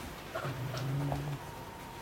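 Karelo-Finnish Laika dog making a low, steady vocal sound, held for just under a second from about half a second in, with a few faint clicks around it.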